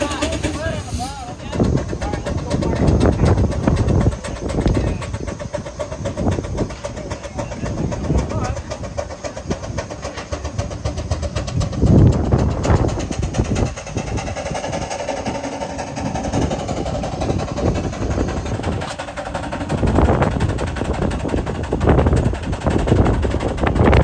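Half-scale Case steam traction engine working under load as it tows a house, its exhaust chuffing in an uneven run of strong low pulses, with voices in the background.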